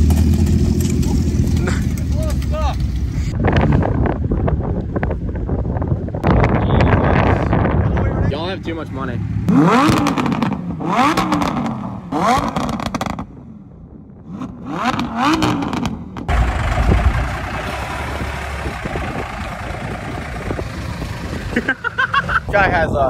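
A small mini truck's engine running as it drives over a collapsed metal tent frame, with the frame scraping and clattering under its wheels. People's voices follow later.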